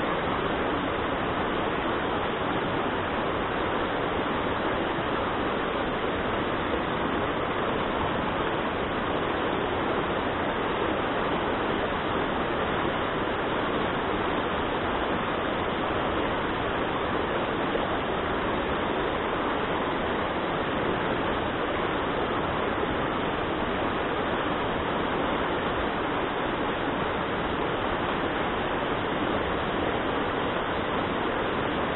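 Rocky mountain stream rushing over stones and through small rapids: a steady, unbroken rush of water.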